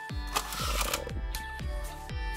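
Background music with a steady beat, and a brief rustle of Panini Prizm trading cards being slid off the top of a stack about half a second in.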